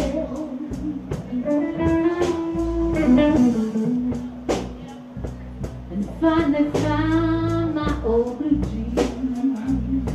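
Live blues band: a woman singing into a microphone over electric guitar, electric bass and drums, with a few sharp drum hits through the passage.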